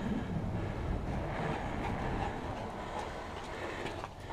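Mountain bike's plus-size tyres rolling over a concrete driveway, with wind on the camera microphone: a steady low rumble that eases off a little toward the end as the bike slows.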